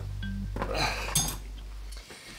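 A few light clinks and clatters of items being lifted out of a cardboard box, over background music with a steady low bass that cuts off at the end.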